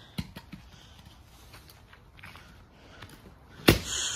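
A few faint ticks and rustles, then a single sharp, loud impact near the end, likely something thrown or swung striking a target.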